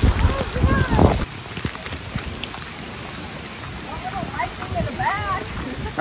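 Heavy rain pouring onto wet pavement, an even steady hiss. For about the first second wind buffets the microphone with a loud low rumble.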